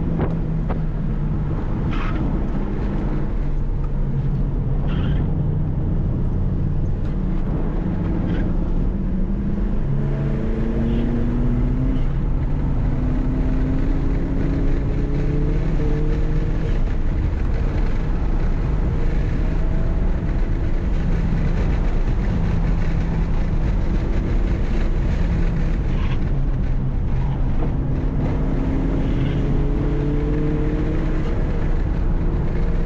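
Heard from inside the cabin, a 2020 Honda Civic Si's turbocharged 1.5-litre four-cylinder, fitted with a 27Won W2 upgrade turbo, is pulling hard on track. Its note climbs slowly several times and falls back between climbs, over steady road and wind noise.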